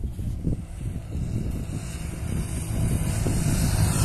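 Wind buffeting the microphone over the rumble of a 4x4 jeep driving across loose volcanic sand. The wind hiss and the rumble grow louder toward the end.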